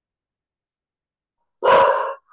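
Dead silence, then a single loud dog bark near the end.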